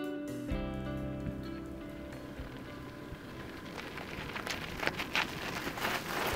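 Guitar music fading out over the first two seconds, then a crackling noise that grows louder, with a few sharp clicks near the end: gravel crunching under a mountain bike's tyres and footsteps as the bike is walked closer.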